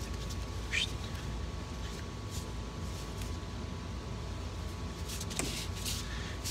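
Faint handling noise as a fuel pressure regulator is screwed onto a metal fuel filter: a few light clicks and scrapes over a steady low hum.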